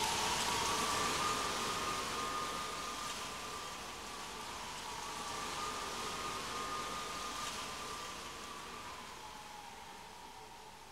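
A steady rain-like hiss with faint long tones that slide slowly up and down in pitch, fading down toward the end.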